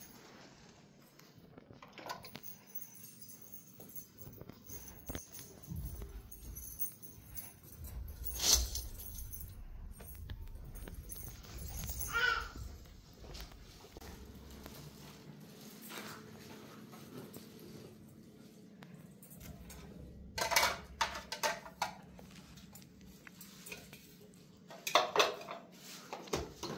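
Scattered knocks and clinks of kitchenware being handled, with a quick run of clattering about twenty seconds in and another near the end as plastic containers and dishes are moved on the counter.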